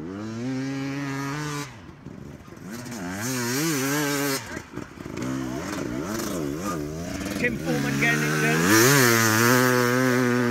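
Off-road motorcycle engine revving up and down over and over as the throttle is worked through turns. It dips briefly twice, then gets louder near the end.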